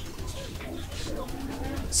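A dove cooing faintly in the background over a low steady hum.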